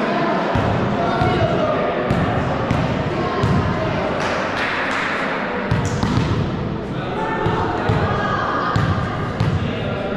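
Indistinct voices of players echoing in a large sports hall, with irregular thuds of a volleyball bouncing on the floor.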